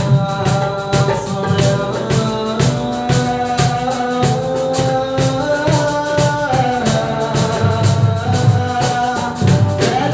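Live acoustic Bollywood-style song: a man sings held, gliding notes over strummed acoustic guitar and a steady dholak drum beat.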